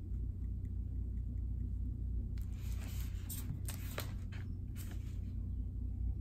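Faint pen ticks on paper, then from about halfway through a few seconds of crackly paper rustling and handling as a planner's pages are picked up and moved, over a steady low background hum.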